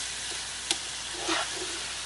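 Ground meat sizzling as it browns in a frying pan, stirred with a slotted spatula. There is a single sharp tap about a third of the way in.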